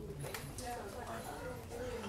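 Soft, indistinct voices of people talking in a classroom, with a few light knocks and taps.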